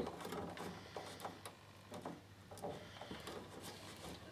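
Faint small clicks and scrapes of insulated spade crimp connectors being worked on and off their tabs on an inverter circuit board, a few scattered clicks over about four seconds. The connectors are being checked for grip, and several are loose.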